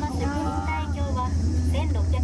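Talking over a steady low rumble inside an aerial ropeway gondola cabin as it runs along its cable.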